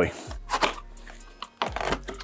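Packing tape being picked at and peeled off a cardboard box, with short scratchy rasps, then a louder rip of tape and cardboard near the end.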